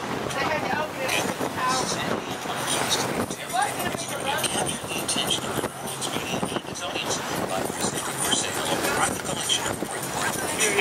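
Indistinct voices over a steady rushing noise.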